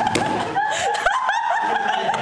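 A person laughing hard: a rapid, high-pitched string of short rising laughs, about five a second, with a sharp tap about a second in.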